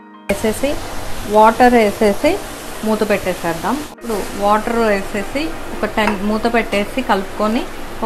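Background song with a singing voice, with short breaks at the start and about halfway through.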